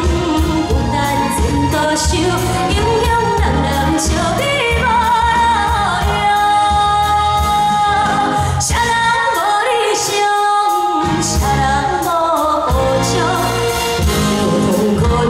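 A woman singing a pop song into a handheld microphone over full backing music, her melody wavering with vibrato. The bass and low accompaniment drop out for about a second around ten seconds in, then return.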